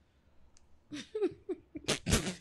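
A person laughing: after a quiet moment, a few short giggles about a second in break into a sudden loud burst of laughter near the end.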